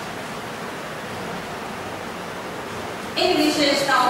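Steady hiss of background noise in a small room, then a woman's voice starts speaking about three seconds in.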